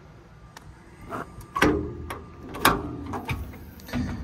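A steel service-body compartment door being unlatched and swung open: a few light clicks, then two loud metal clunks about a second apart, each with a brief ring.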